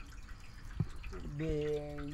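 A short lull with a single drip of water a little under a second in, then a man's voice starting about two-thirds of the way through.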